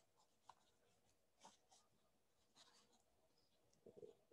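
Near silence: faint room tone with a few very soft ticks and rustles.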